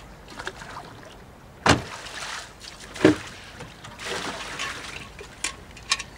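A bucket dipped into lake water over the side of a small boat: water splashing and trickling, with two loud knocks about a second and a half apart.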